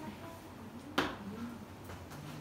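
A single sharp click of chalk striking a chalkboard about a second in, over faint voices in the room.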